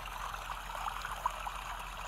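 A white-noise recording playing steadily in the background as a continuous even hiss, with faint scattered small ticks.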